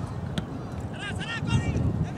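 Voices shouting across an outdoor soccer field, with short high calls about a second in, over a steady low wind rumble on the microphone. A single sharp tap is heard just before the calls.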